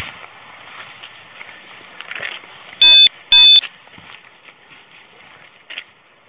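Clothing rustling and rubbing as hands pat down a man's jeans and jacket. About three seconds in, two loud, high electronic beeps sound about half a second apart.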